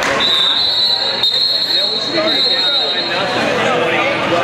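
Referee's whistle blown in one long, steady high blast that starts the wrestlers from the referee's position, over gym crowd chatter and shouting.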